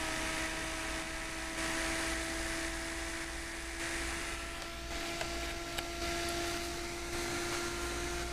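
Bedini pulse motor running with its wheel spinning at speed: a steady hum with a light whir of air noise, the pitch creeping slightly upward in the second half as the wheel speeds up.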